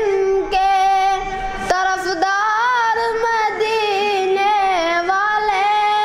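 A boy singing an Urdu naat unaccompanied, holding long notes that bend and waver in pitch, with a short breath about two seconds in.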